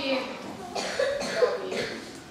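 Actors speaking stage dialogue, voices picked up from the audience at a distance.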